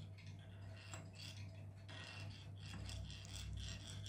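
Faint rubbing and small clicks of 3D-printed plastic parts being handled, over a steady low hum.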